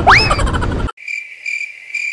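A rising whistle-like glide, then about a second in the rest of the sound cuts out, leaving a cricket-chirping sound effect: a high, steady chirp repeated a few times, the classic awkward-silence gag.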